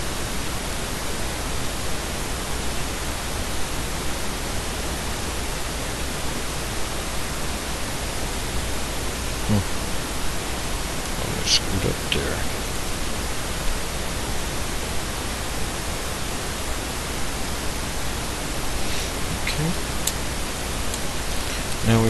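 Steady recording hiss with a low hum underneath, with a few faint short sounds breaking through now and then.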